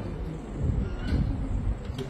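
Low, uneven rumble of room noise in a pause between spoken sentences.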